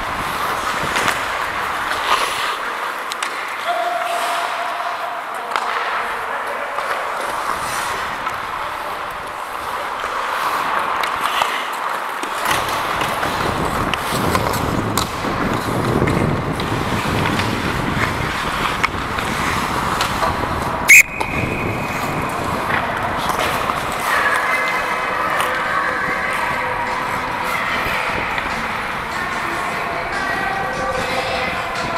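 Ice hockey play heard from the referee's helmet: steady scraping of skates on the ice with stick and puck sounds, then, about two-thirds of the way in, one short, very loud blast of the referee's whistle stopping play, followed by players' voices.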